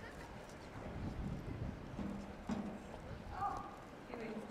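Footsteps of hard-soled shoes on brick paving, a few distinct clicks at a slow walking pace, with faint voices in the background.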